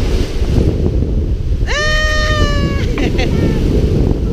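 A toddler crying: one wail of about a second near the middle, held then falling slightly in pitch, then a brief whimper, over heavy wind buffeting on the microphone and surf.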